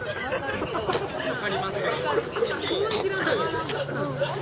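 Several people chatting at once, with two sharp clicks, about a second and about three seconds in.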